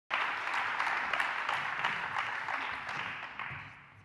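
Audience applauding, the clapping thinning and fading out over the last second or so.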